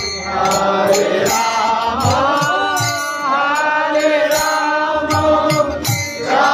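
Devotional kirtan: voices chanting a melody over a harmonium's reedy chords, with a regular beat of percussion strokes.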